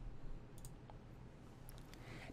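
A few faint, sharp computer mouse clicks over a low, steady background hum, as the user clicks through the program's menus.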